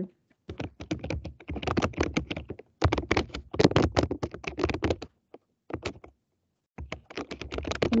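Rapid typing on a computer keyboard, heard as two runs of keystrokes with a pause of about a second and a half between them.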